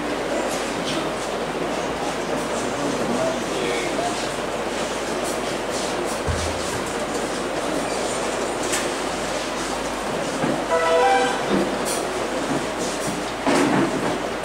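Steady murmur of indistinct voices and room noise in a church hall. A brief held musical chord sounds about eleven seconds in, and music starts near the end.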